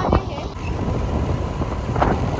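Wind on the microphone: a steady low rumble.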